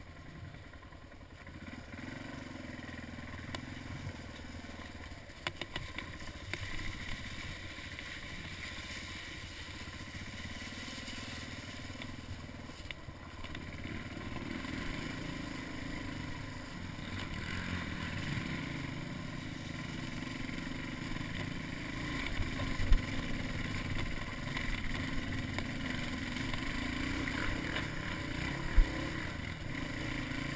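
Suzuki DR350's single-cylinder four-stroke engine pulling under load as the dirt bike climbs a hill, growing steadily louder, with a few clattering knocks about five to seven seconds in and two sharp knocks near the end.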